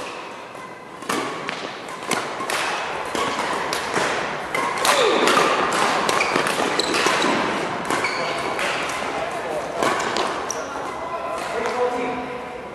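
Badminton doubles rally: rackets striking the shuttlecock again and again in a string of sharp hits, with players' shoes moving on the court floor.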